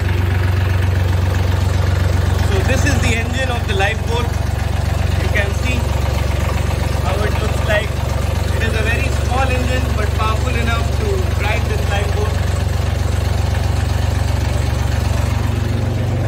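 Lifeboat's small inline diesel engine running steadily, heard through its open engine hatch.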